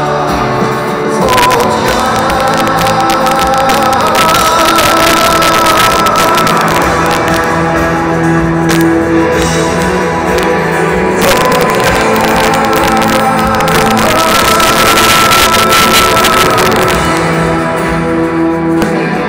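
A rock band playing live through an instrumental passage: strummed acoustic guitars with drums and steady cymbal wash, heard loud through an arena PA. The cymbals come in about a second in and ease off near the end.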